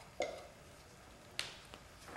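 Two sharp taps about a second apart, the first with a short ring, as a metal body-filler can and a wooden mixing stick are handled on a glass mixing sheet.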